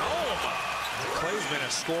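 Basketball game broadcast audio heard at low level: a play-by-play commentator talking over arena background noise, with a basketball bouncing on the hardwood court.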